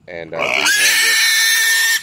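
A young Yorkshire-cross boar squealing in one long, loud, unbroken scream of about a second and a half. It is the distress of a pig separated from its penmates, wanting to be back with them.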